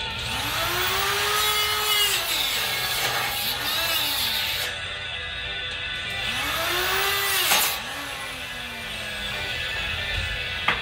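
Angle grinder grinding a steel bar in several passes, its motor pitch rising and sinking as it is eased off and pressed into the metal, with a hiss of grinding.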